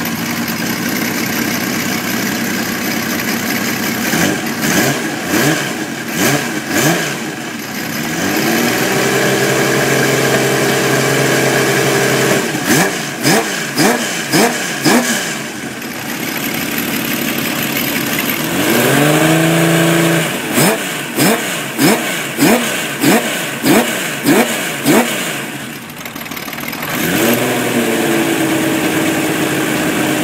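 Honda CBX's air-cooled inline-six engine being revved with the bike standing. Runs of quick throttle blips alternate with longer revs that rise and are held for a few seconds, the engine dropping back toward idle in between.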